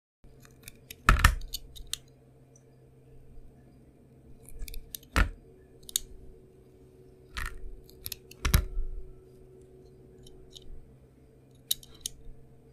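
Snap-off utility knife blade cutting through a bar of green painted soap: sharp, crisp cracks as pieces break away, the loudest about a second in and three more over the following seconds, with small clicks between. A faint steady hum runs underneath.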